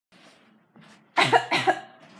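A person coughing: two or three loud, throaty coughs in quick succession about a second in.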